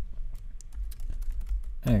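Computer keyboard typing: scattered key clicks as code is entered, over a faint steady low hum.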